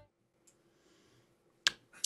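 Near silence, with a faint tick about half a second in and one sharp click near the end.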